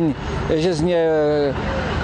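Mostly a man's speaking voice, which pauses near the end; behind it, steady road-traffic noise from passing cars.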